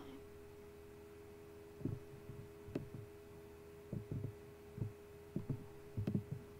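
Faint soft thumps and a sharp click from a computer mouse being handled and clicked on a desk, scattered irregularly over the last four seconds, over a steady electrical hum.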